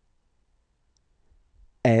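Near silence, then near the end a man's voice pronounces the French letter F ("effe").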